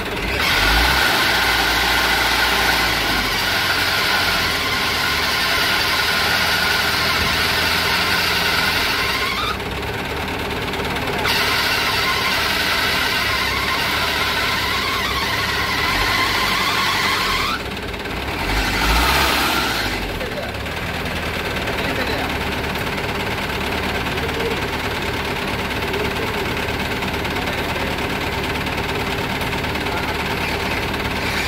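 Four-cylinder diesel engine of a Mahindra 475 DI tractor running hard at high revs in long pushes. It eases off at about 9 s, picks up again, drops near 17 s, then surges briefly and settles to a lower steady run.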